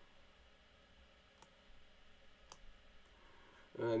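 Two sharp computer mouse clicks about a second apart, against quiet room tone.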